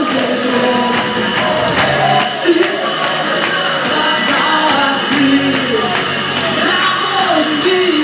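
Live worship song: vocalists singing into microphones over amplified backing music, filling a hall.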